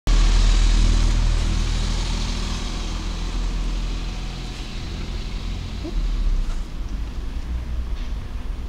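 Road traffic noise: a passing vehicle's rushing sound and low rumble, loudest at the start and fading over the first few seconds, with the rumble swelling again about six seconds in.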